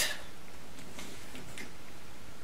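Quiet room tone with a few faint light ticks as a salsa jar is picked up and handled.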